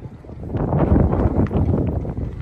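Wind blowing on the microphone, building into a loud gust about half a second in.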